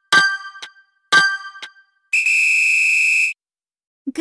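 Countdown-timer sound effect: two bell-like dings a second apart, each ringing and dying away, then one long steady electronic beep of just over a second marking the end of the count.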